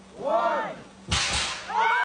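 Voices call out together once, then about a second in a gender-reveal smoke-and-confetti cannon fires with a sudden bang that runs on as a hiss of blown smoke. High-pitched shrieks and cheers break out near the end.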